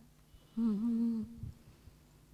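A person's voice humming one short, steady note that begins about half a second in and lasts under a second.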